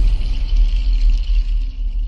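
The end of a TV channel ident's music: a deep, sustained bass rumble with a faint high shimmer above it, after the melodic notes have stopped.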